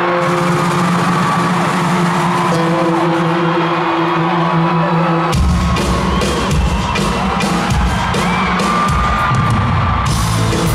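Live Latin pop band playing in an arena, heard through the hall's loudspeakers. Held chords ring for about five seconds, then the bass and drums come in hard, with the crowd cheering.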